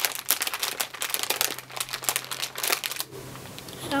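A small plastic packet being crinkled and crumpled in the hands, a dense irregular crackling that thins out about three seconds in.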